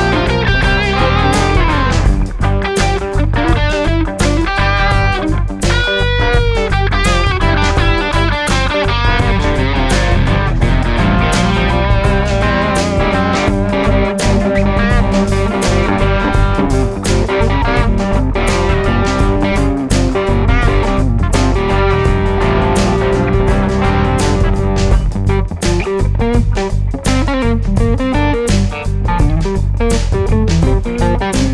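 Two Gretsch electric guitars played together through amplifiers over a looper. A lead line with bent, gliding notes runs over a repeating rhythm part and sustained notes.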